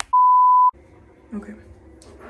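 An edited-in electronic bleep: one steady, pure tone at a single pitch, loud and lasting just over half a second, starting and stopping abruptly, like a censor bleep. A woman then says "okay" quietly.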